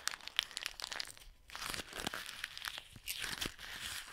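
A sheet of paper being crumpled and squeezed in the hands close to the microphone: dense, irregular crinkling crackles, with a brief lull about a second and a half in before they start again.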